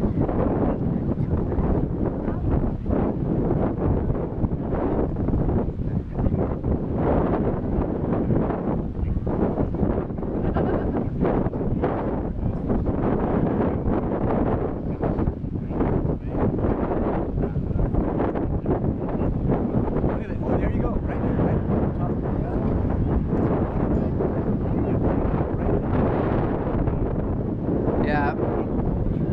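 Wind buffeting the camera microphone: a steady, dense low rumble with constant gusty flutter.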